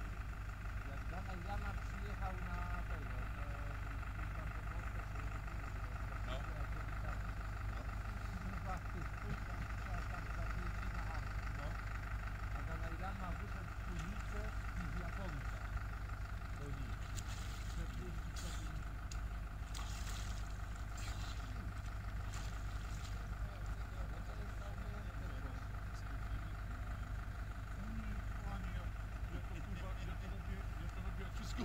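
Steady low outdoor rumble with a constant hum, under faint distant voices; about two thirds of the way through comes a run of short, sharp clicks.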